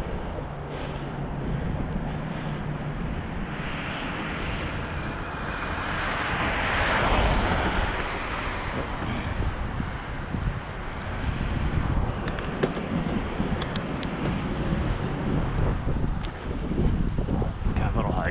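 Wind rushing over a bicycle-mounted action camera's microphone while riding, with steady road and tyre noise underneath. The noise swells to a louder whoosh about seven seconds in and then settles back.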